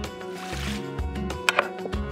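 Background music, with two quick clinks about one and a half seconds in as a frying pan is set down on a glass induction hob.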